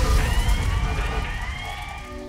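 Title-sequence theme music ending in several rising electronic sweeps over heavy bass, easing down in level.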